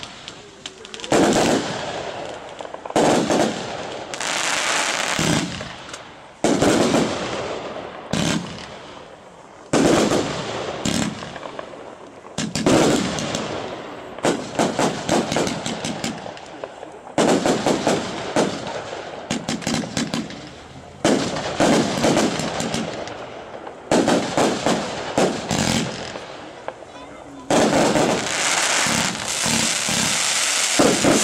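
Röder 'Verführung' 114-shot, 25 mm fireworks compound firing. Its shots and bursts come in volleys every second or two, each dying away in dense crackle, and near the end they run together without a break.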